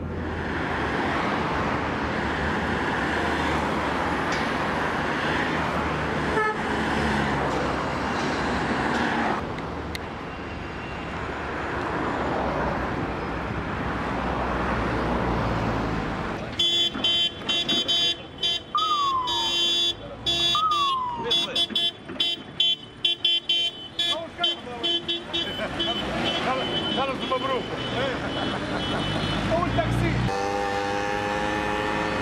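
Road traffic noise, a steady rush of passing cars, for the first half. From about halfway through, car horns sound in repeated stop-start blasts in congested traffic.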